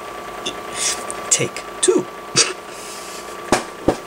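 Handling noise from a camera and tripod being picked up and set back up after being knocked over: scattered rustling and a few short low sounds, then two sharp clicks near the end.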